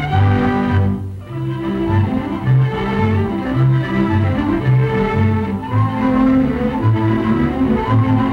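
Orchestral film score with bowed strings: held low cello and bass notes moving beneath violins.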